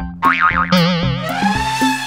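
Cartoon 'boing' sound effect: a tone that wobbles rapidly, then glides up and back down in an arch, over background music with a steady beat.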